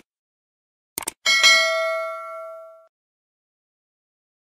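Subscribe-button animation sound effect: a quick double mouse click about a second in, then a notification bell ding that rings out and fades over about a second and a half.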